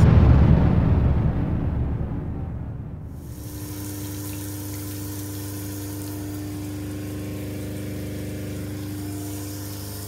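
Background music fades out over the first three seconds. Then an electric water pump hums steadily under the hiss of water running from the newly plumbed shower head.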